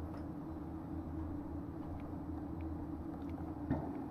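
Low, steady background hum of room tone, with a few faint, soft ticks.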